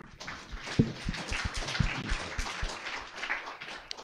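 Audience applauding; the clapping starts at once and dies away near the end.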